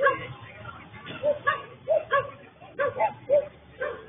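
A dog barking repeatedly in short, uneven barks, about two a second, with people's voices underneath.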